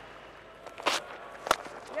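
A cricket bat striking the ball once, a sharp crack about one and a half seconds in, over faint stadium ambience; a softer scuff comes about half a second before it.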